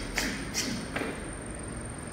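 A boxer shadowboxing with footwork on a wooden floor: three short, sharp sounds about a third to half a second apart as he steps, switches stance and punches.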